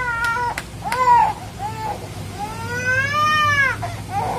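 A small child crying in a run of high-pitched wails, the last and longest near the end, upset at having its head shaved.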